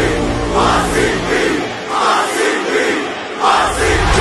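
A group of voices shouting a rhythmic chant in unison over backing music. The music's bass drops out midway while the chant carries on, and the loudest shout comes just before the end.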